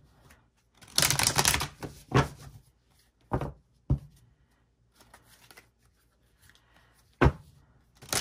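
A deck of tarot cards being riffle-shuffled by hand: one dense riffle about a second in, then several short sharp clacks of the cards spaced over the following seconds, one of them near the end.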